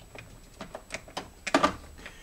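Irregular light clicks and rattles of a snowmobile choke lever and cable being handled and fed back through a mounting hole, with a louder cluster of clacks about one and a half seconds in.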